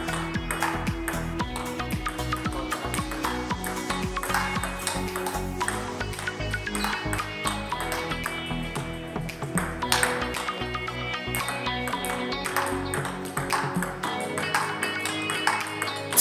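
Table tennis rally: a plastic ball clicking sharply off the paddles and the table in quick succession, over background music with a steady beat.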